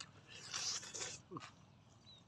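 Mouth eating sounds: teeth tearing grilled meat off the bone with a loud sucking, slurping noise for about a second, followed near the middle by a short falling vocal sound and a click.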